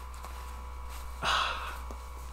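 One short breath out, a sigh starting about a second in and fading within half a second, as a tight buttoned shirt collar is loosened.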